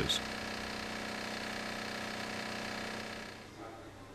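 A steady machine hum, holding one pitch, that fades down about three seconds in.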